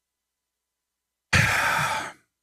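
Dead silence, then about a second in, a loud breath from a man close to the microphone, lasting under a second.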